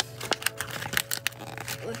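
Plastic blind-pack capsule and its card packaging being handled and worked open by fingers: a quick, irregular run of sharp plastic clicks and crinkles.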